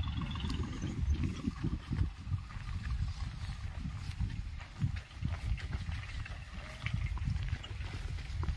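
Irregular low rumble of wind buffeting the microphone, with a few faint scattered clicks.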